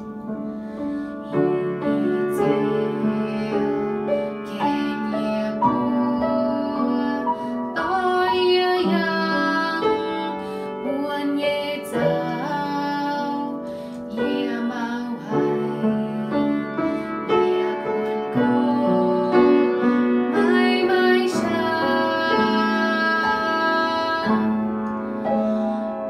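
A girl singing a Christian hymn in the Iu Mien language over a keyboard accompaniment of held chords.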